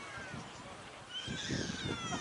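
Distant high-pitched shouting from players and spectators. The shouts start about a second in, with several sliding calls overlapping over outdoor background noise.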